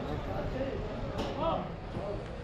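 People talking indistinctly against steady low background noise.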